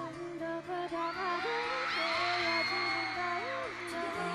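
K-pop dance song with a woman's voice singing over sustained synth chords and bass, the drum beat dropped out for a breakdown. The bass note steps down about halfway through.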